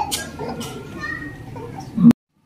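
Low voices and chatter from a seated congregation in a hall, children's voices among them, between the preacher's phrases.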